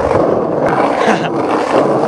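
Skateboard rolling fast over street asphalt: a steady, rough rumble from the wheels.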